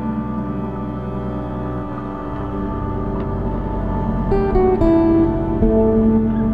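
Background music: slow ambient piece with held tones, plucked guitar-like notes entering about four seconds in.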